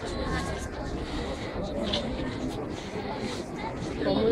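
Low rumble of army trucks' engines driving past in a parade column, strongest in the first two seconds or so, under indistinct chatter from the crowd along the street.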